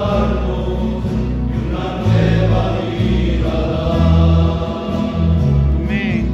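Men's choir singing a hymn, with long held notes and a strong low bass line.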